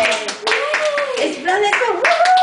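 A small group clapping their hands repeatedly, with high-pitched voices calling out and cheering over the claps.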